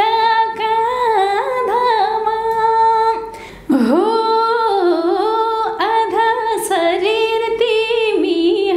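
A woman singing unaccompanied, one voice holding long, wavering melodic notes, with a breath about three and a half seconds in before the phrase resumes.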